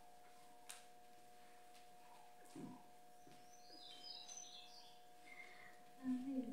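Near silence: room tone with a steady faint hum, a soft click about a second in, and a few faint high chirps about two-thirds through.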